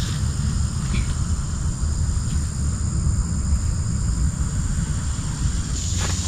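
Low, uneven rumble of wind on the microphone, with a steady high drone of insects behind it.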